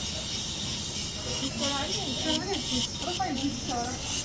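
Faint voices talking over a steady high hiss.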